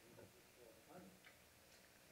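Near silence: room tone with faint, distant speech from someone off the microphone.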